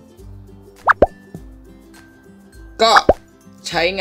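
An edited-in cartoon-style plop sound effect about a second in, a quick rise in pitch that drops away suddenly, with a second, shorter plop about two seconds later, over soft background music.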